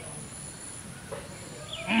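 Quiet outdoor background, then near the end a man's drawn-out "hey", rising and falling in pitch.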